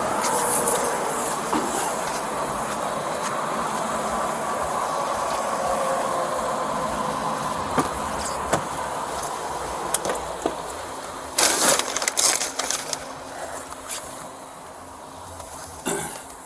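Steady roadside noise of highway traffic and idling truck engines picked up on a body-worn camera. It is followed by clicks and then a burst of knocks and rustling about three-quarters of the way through as a patrol car door is opened and the wearer climbs in. After that the background drops to a quieter cabin sound.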